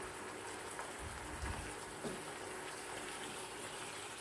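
Pumpkin pieces sizzling steadily in a non-stick frying pan while being stirred with a spatula, with a few soft knocks of the spatula against the pan.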